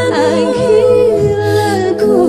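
Two women singing a slow worship song together over electronic keyboard accompaniment, holding notes with vibrato over steady low sustained keyboard chords.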